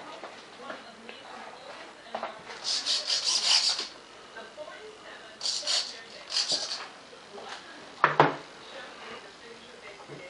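Handling noise: several short bursts of rubbing or scraping, the longest about a second long near three seconds in, and a sharp click or knock about eight seconds in.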